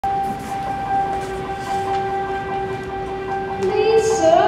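A steady held tone, several pitches sounding together over a light hiss, with a pitched sound rising just before the end.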